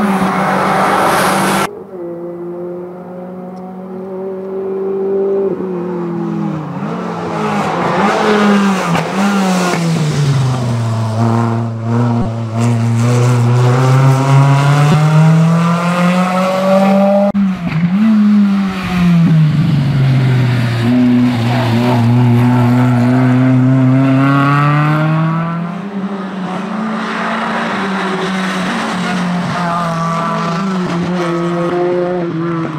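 Renault Clio hillclimb car's four-cylinder engine run hard through the gears: its pitch climbs, falls away and climbs again several times as it accelerates and backs off. The sound changes abruptly about two seconds in and again just past halfway.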